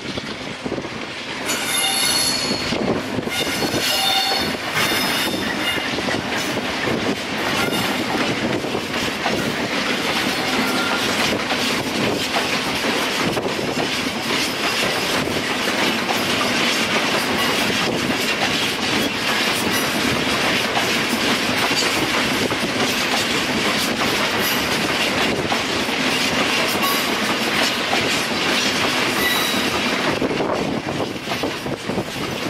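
A Class 66 diesel freight locomotive passing, followed by a long train of loaded covered hopper wagons rumbling and clattering steadily over the rails. Two short, high-pitched squeals come in the first few seconds.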